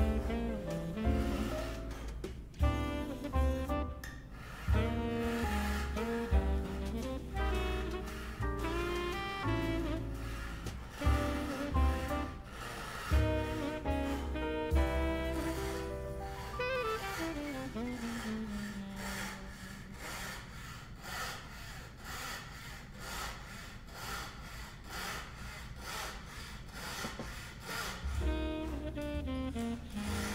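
Background music with a melody, over the back-and-forth rasp of a chevalet's fret saw cutting a packet of dyed sycamore veneer. The saw strokes come as a steady, even rhythm, clearest in the second half.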